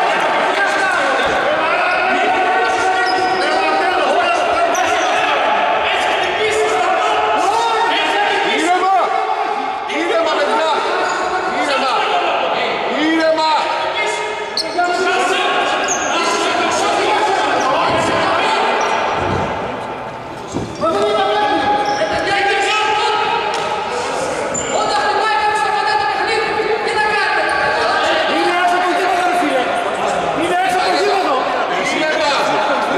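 Several people talking and calling out at once in a reverberant gym hall, with a few short knocks among the voices.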